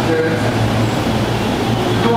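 Steady low hum and rumble of a Yamanote Line electric commuter train at a station platform, mixed with general platform noise.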